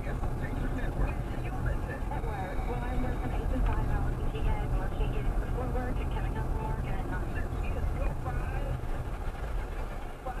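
Car cabin noise while driving slowly: a steady low rumble of the engine and tyres, with indistinct voices over it.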